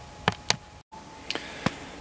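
A few light, sharp plastic clicks, two close together and two more about a second later, as a car's rear light cluster and its plastic multi-plug wiring connector are handled and released.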